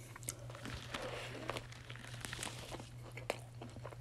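Close-miked biting into a Burger King Whopper Jr. and chewing it: soft, wet mouth sounds with scattered small clicks.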